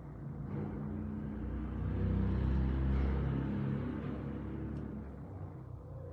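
A motor vehicle's engine rumble that swells, peaks about halfway through and fades away again, like a vehicle passing by.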